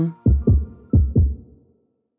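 Closing sting of a jingle: two pairs of deep bass thumps in a heartbeat rhythm, each dropping in pitch, over a faint held tone, fading out.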